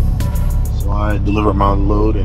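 A voice, speaking or singing over music, comes in about a second in, above the steady low drone of a semi truck's engine heard from inside the cab.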